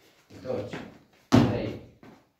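A single loud thud about a second and a half in as a child lands a jump on a gym floor, one landing in a series of repeated jumps, with a man counting the reps aloud just before it.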